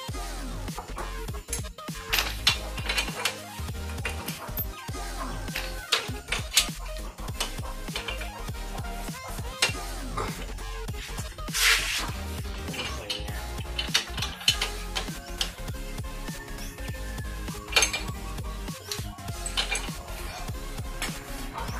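Background music over intermittent metallic clinks and clicks as a motorcycle's roller drive chain and rear chain-adjuster bolt are handled, the loudest rattle just before the middle.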